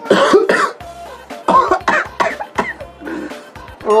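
A man coughing in several sharp bursts over background music.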